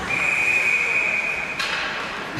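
Ice hockey official's whistle blown in one long, steady blast of nearly two seconds, stopping play, over the hiss of arena noise.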